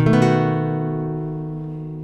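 Nylon-string classical guitar sounding a single strummed B7 chord, which rings and slowly fades for about two seconds.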